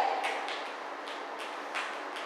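A lull between spoken words: quiet room tone with a few faint, soft clicks.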